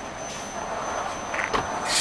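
Heavy trucks' engines running on a highway, a steady rumble with road noise, and a sudden burst of hiss near the end.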